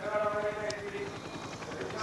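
A man's voice holding one level, drawn-out hesitation sound for about a second and a half.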